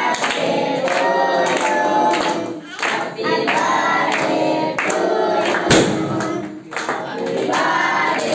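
A group of children singing together in chorus while clapping their hands. One sharp crack sounds a little past the middle.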